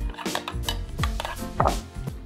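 Background music with a few light clicks and taps as plastic squeeze bottles and their flip caps are handled over a glass bowl.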